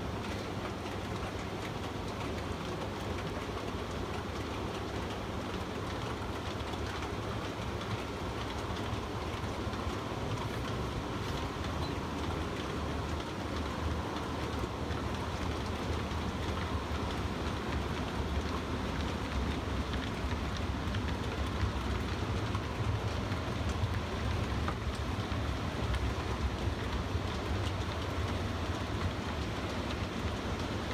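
A long train of OO gauge model brake vans rolling along the layout track: a steady rattling rumble of many small wheels on the rails, growing a little louder in the second half.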